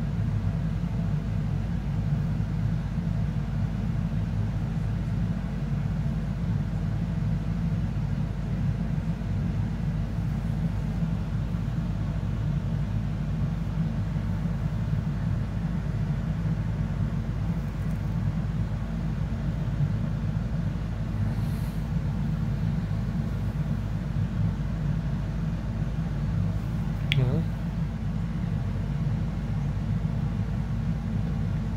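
Steady low rumble, with a brief thin squeak falling in pitch near the end.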